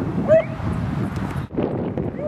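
A dog gives one short, high yip about a third of a second in, over steady wind noise.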